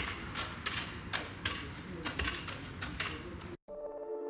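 Irregular sharp clicks and knocks, about three a second, over a low rumbling background. Near the end the sound cuts off suddenly and soft ambient electronic music begins.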